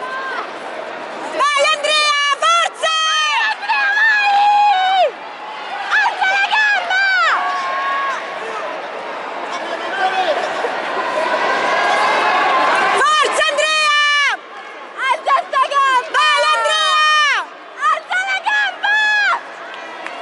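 Bursts of sharp, high-pitched shouting, several yells in quick succession, over a steady crowd murmur in a large hall. There is a stretch of murmur alone in the middle.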